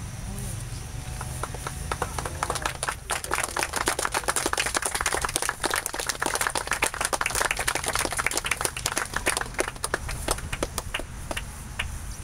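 Small crowd clapping, starting about a second in, at its fullest in the middle and thinning out near the end.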